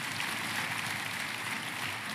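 A steady, even hiss of noise with no voice in it.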